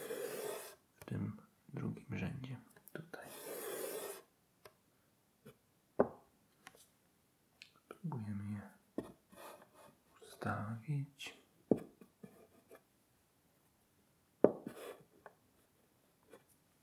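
Wooden chess pawns set down one at a time on a wooden chessboard: a few sharp taps, one about six seconds in and the loudest near the end. Soft, close whispering and murmuring run between them.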